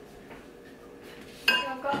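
A single sharp clink of a kitchen utensil or dish knocking against ceramic tableware, about one and a half seconds in, ringing briefly. A laugh follows.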